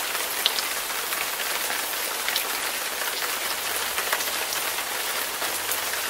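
A steady, even hiss with faint scattered ticks, like rain falling on a surface.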